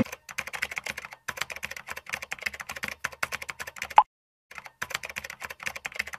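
Typing on an HP laptop's chiclet keyboard: a quick, continuous run of key clicks, with one louder click about four seconds in and a short pause after it.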